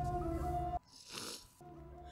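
Film soundtrack: a held music note over a low rumble, cut off suddenly under a second in, followed by a short breathy noise and a faint low hum.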